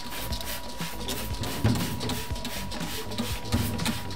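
Hand trigger spray bottle squirting liquid onto a steel bar in quick repeated pumps, about three or four short sprays a second.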